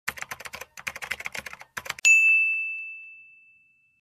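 Intro sound effect: rapid typing clicks for about two seconds, then a single bright bell ding that rings out and fades over about a second and a half.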